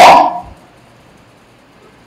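A man's raised voice ending a drawn-out word about half a second in, followed by a pause with only low, steady room noise.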